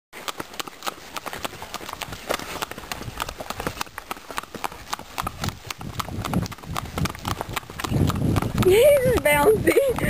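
A gaited mare's hooves clip-clopping on a paved road in her natural gait, a quick, continuous run of hoofbeats that grows louder in the last two seconds. A voice is heard near the end.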